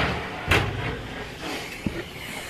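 Handling noise in a small tiled bathroom: a knock about half a second in, faint movement noise, then a short sharp click near the end.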